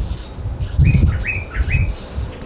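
A small bird chirping three times in quick succession, short rising chirps about half a second apart, over a low rumble.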